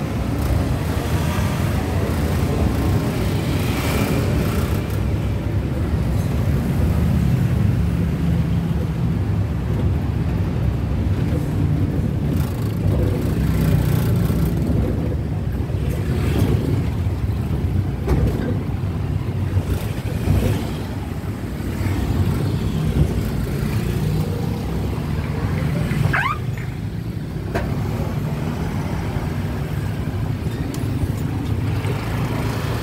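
Steady low engine and road rumble from riding an open tuk-tuk through street traffic, with motorbikes and cars around. Near the end there is a short rising whine.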